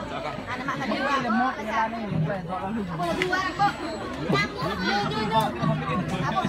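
Crowd chatter: many people talking over one another at once, no single voice clear.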